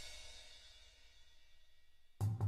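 Marching band's crash cymbals and a low drum, struck once, ringing on and fading away steadily.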